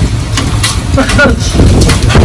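Hailstones and heavy rain coming down hard: a dense, continuous clatter of many small impacts over a loud low rumble.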